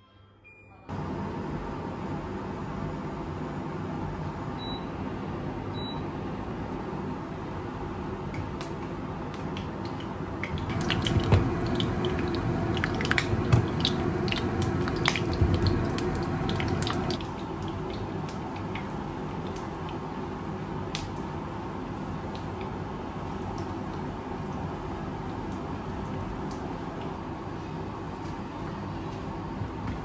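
An induction cooktop switches on about a second in and runs with a steady noise while glutinous rice cakes fry in a nonstick pan. A louder stretch of frying in the middle carries many small clicks and ticks as the cakes are set in the pan and moved.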